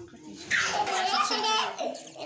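A person's high-pitched voice, starting about half a second in and lasting about a second and a half.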